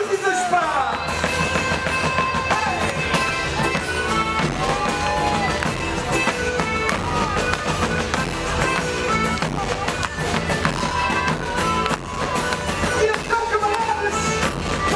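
A live band playing an upbeat song, with drums and bass guitar coming in about half a second in and a voice over the band.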